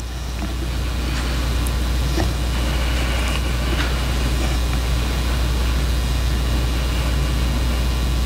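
Steady low electrical hum with a hiss over it, swelling over the first couple of seconds and then holding level: the room tone and sound-system hum of a quiet sanctuary, with a few faint ticks.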